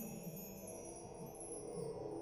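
Percussion ensemble playing a quiet passage: high metallic chimes ringing and shimmering over soft, sustained low tones.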